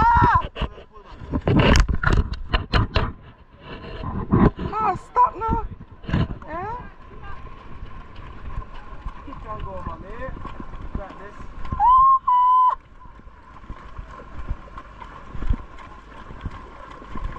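Horses walking on a beach trail ride: scattered hoof clops and knocks, mixed with voices. About twelve seconds in comes a short, high, steady whistle-like tone.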